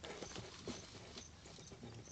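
Faint background noise with a few soft clicks and short faint high pips.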